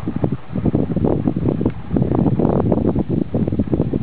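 Wind buffeting the microphone: a loud, irregular, gusting rumble.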